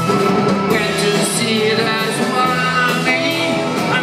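Live rock band playing a fast garage beat number: electric guitar, bass guitar and drums, with a wavering lead line over the top.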